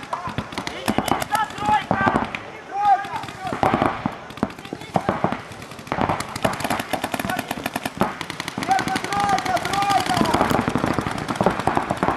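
Paintball markers firing in rapid strings of shots, growing denser in the second half, with voices calling out across the field.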